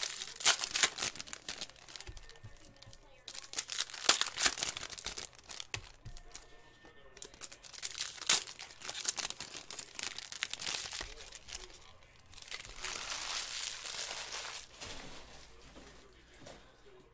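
Trading-card pack wrappers from 2012 Panini Prizm football crinkling and tearing as packs are opened, with cards being handled. The crackle comes in spells, and a longer steady rustle comes near the end.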